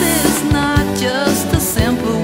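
Pop-rock song with a woman singing over a band backing of drums, bass and other instruments, with a steady beat.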